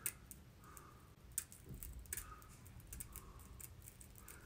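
Small scissors snipping through the lace of a lace-front wig along the hairline: several faint, irregularly spaced clicks.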